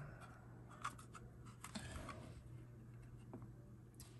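Faint, scattered clicks and light plastic handling noise as a 2.5-inch hard drive is worked out of the pried-open plastic enclosure of a Seagate Backup Plus Portable, over a low steady hum.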